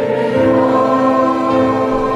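Congregation singing a hymn in chorus, holding long notes that move to a new chord about a third of a second in.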